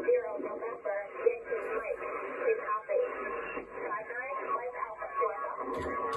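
A distant station's voice received on single-sideband through an HF transceiver's speaker, thin and narrow-sounding like a radio voice, as one side of a contest contact.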